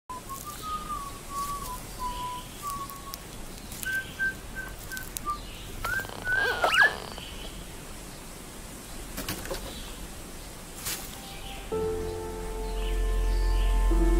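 Bird calls: short whistled notes, with a quick rising-and-falling run of calls about six seconds in, over faint outdoor ambience with a few sharp clicks. Near the end a sustained music chord with a deep bass comes in and swells louder.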